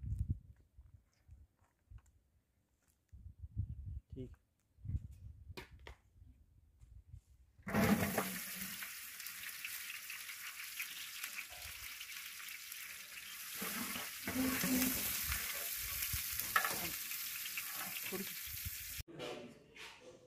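Sliced onions frying in hot cooking oil in a large aluminium pot over a wood fire, stirred with a metal slotted spoon. A loud sizzle starts suddenly about eight seconds in and runs on steadily, cutting off about a second before the end. Before it there are only faint low rumbles.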